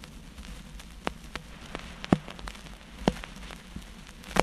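Surface noise of a vinyl 45 single after the song has ended: a faint steady hiss with scattered crackles and sharp clicks, the loudest a little past two seconds in.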